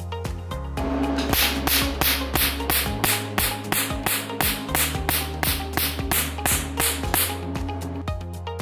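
A Q-switched Nd:YAG laser handpiece fires pulses onto black paper, each pulse a sharp snap. The snaps come about three a second, starting about a second in and stopping near the end, over background music.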